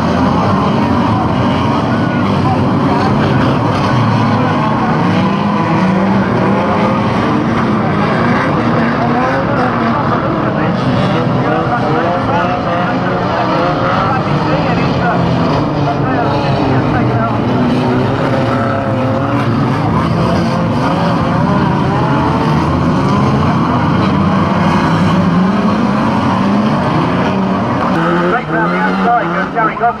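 A pack of banger racing cars running together on the track, many engines overlapping and rising and falling in pitch as they rev.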